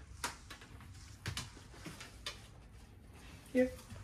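A few scattered light clicks and taps on a hard floor: a dog's nails as it moves about hunting for a tossed treat. A man's voice calls "Here" near the end.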